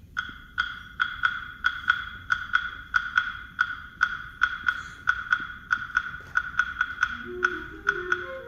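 Concert band percussion opening a piece with a wood block tapping a steady beat, about three strokes a second. Near the end, wind instruments come in with a low melody over the taps.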